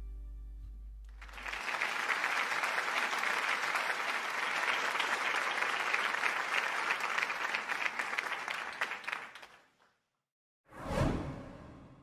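Background music fading out, then applause for about eight seconds, which dies away. After a brief silence, a short whoosh swells and fades near the end.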